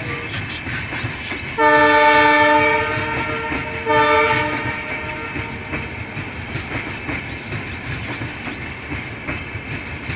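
Passenger coaches rolling past, the wheels clattering steadily over the rail joints. A multi-tone train horn sounds twice, about a second and a half in and again about four seconds in, the first blast the longer and louder.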